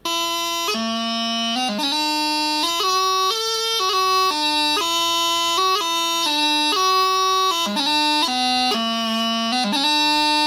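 Bagpipe practice chanter playing a pipe tune: a single line of reedy notes broken by quick grace-note flicks, with no drones. It starts suddenly.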